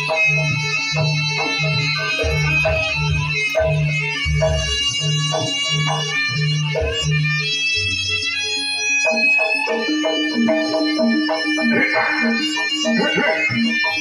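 Live Javanese jaranan-style ensemble music: a reedy wind melody over a low note struck about twice a second. The beat changes to a different, higher pattern about eight seconds in.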